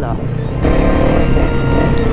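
Motorcycle engine running with a low rumble, and background music coming in about half a second in over it.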